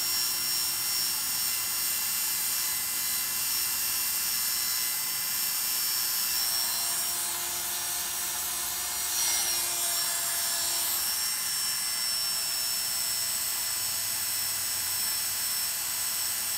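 Oster Classic 76 electric hair clipper with a size 1A detachable blade running steadily while it cuts hair up against the grain around the ear: a continuous motor hum and buzz mixed with the hiss of the blade through short hair.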